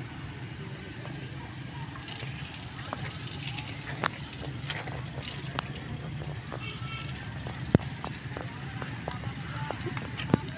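A steady low engine rumble under faint background voices, with scattered sharp clicks and a few short high chirps. A single sharp click nearly eight seconds in is the loudest sound.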